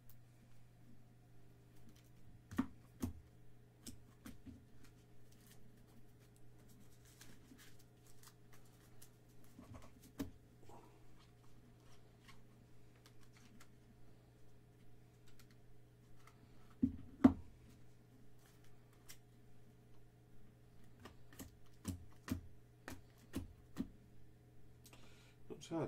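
Baseball trading cards, some in hard plastic holders, being handled and shuffled through by hand: faint scattered clicks and taps, with two sharper knocks about seventeen seconds in, over a steady low hum.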